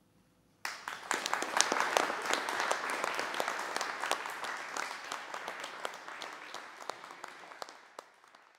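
Audience applauding: after a moment of near silence the clapping starts suddenly about half a second in, then slowly dies down.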